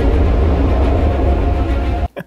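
Loud, low rumbling drone from a commercial's soundtrack, dense and steady, cutting off suddenly at the end.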